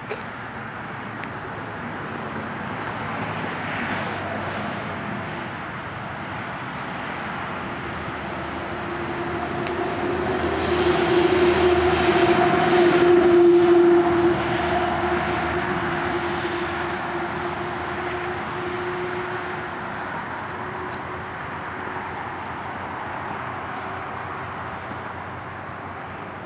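A passing vehicle: a steady rushing noise with a humming tone that grows louder to a peak about halfway through and then slowly fades away.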